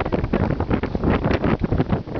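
Wind buffeting the camera's microphone in loud, uneven gusts.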